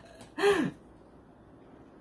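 A man's single short laughing exclamation, its pitch rising then falling, about half a second in. Only faint room hiss follows.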